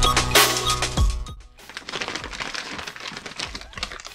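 Electronic music with a drum beat, cutting off about a second in, then the quieter crinkle and rustle of a kraft-paper mailer envelope being handled.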